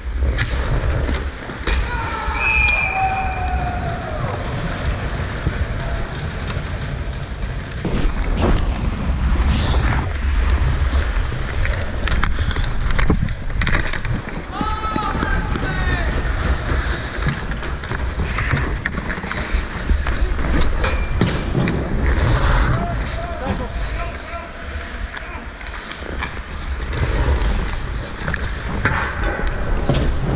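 Ice hockey play heard from a helmet-mounted camera: skate blades scraping and carving the ice, with wind rumbling on the microphone. Sharp clacks of sticks and puck come throughout, and players shout short calls a few times, about two seconds in, near the middle and again later.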